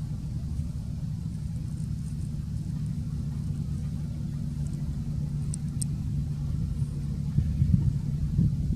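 A steady low rumble with a constant low hum underneath, and two faint high ticks about five and a half seconds in.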